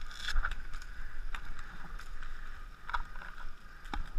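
Several single sharp pops of paintball markers firing, spaced about a second apart, over steady rustling noise.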